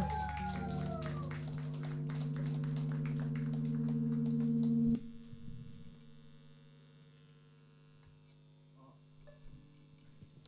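A rock band's final chord held on electric guitars and bass with drum hits over it, all cutting off together about halfway through. After the cutoff only a faint ringing tone and the quiet room are left.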